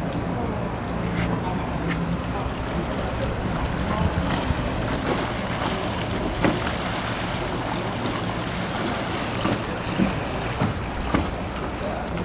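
Steady canal-side hum of a motorboat engine on the water, mixed with wind on the microphone. A few sharp knocks stand out now and then, more of them near the end.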